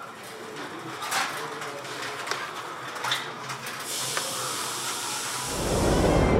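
Street ambience in a narrow lane, with a few scattered clicks and rattles as a cycle rickshaw approaches. Near the end a loud, low rumbling noise cuts in abruptly.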